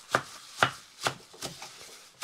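Large kitchen knife chopping a pile of fresh wild garlic (ramsons) leaves on a wooden cutting board: sharp knocks of the blade hitting the board, about two a second, the first three the strongest.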